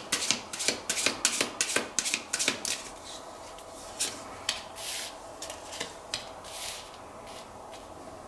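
A deck of Lenormand fortune-telling cards being shuffled by hand: a quick run of crisp card snaps for the first three seconds or so, then a few softer swishes and taps as cards are drawn and laid on the table.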